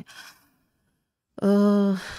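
A woman's voice: after a pause of about a second, one steady held vowel at a single pitch for about half a second near the end, a hesitant 'eh' before she goes on speaking.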